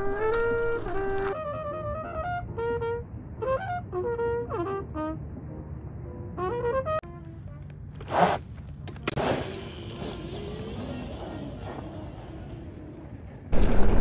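A trumpet being played: a series of held notes and short stepping phrases for about the first seven seconds. After a brief burst, a steady rushing noise fills the rest.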